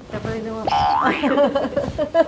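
People's voices, with one short rising swoop in pitch a little under a second in.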